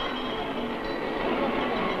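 Steady hiss and rumble of an old 16 mm film soundtrack, with a few faint held tones underneath.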